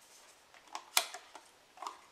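A plastic skincare tub of hydrating gel being handled and opened: a few sharp plastic clicks and light knocks, the loudest about a second in.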